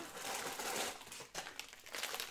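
Plastic bag of frozen vegetables crinkling as it is handled and lifted, an irregular rustle with a few sharp crackles.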